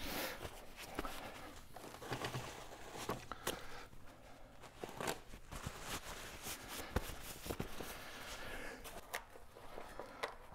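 Footsteps and small handling noises in a small room: scattered light clicks, knocks and rustles, quiet throughout, with a slightly sharper knock about seven seconds in.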